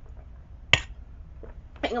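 A single sharp snap or click about three-quarters of a second in, over a low steady hum, followed near the end by a woman starting to speak.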